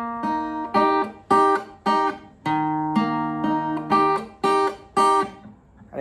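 Acoustic guitar with a capo, played with a pick and fingers: a D major chord broken into single picked notes, with the B and high E strings plucked together in short notes that are muted right away, the pattern played twice. One group of notes rings on for nearly two seconds in the middle.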